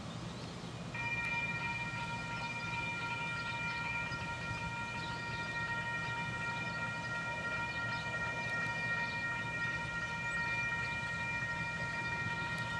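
A locomotive whistle sounds one long, steady chord that starts about a second in and is held without a break, over a low steady hum.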